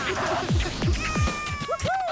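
Electronic ident music for a TV channel logo bumper: repeated falling bass swoops, with sliding synth tones that glide slowly down from about a second in and bend up and down near the end.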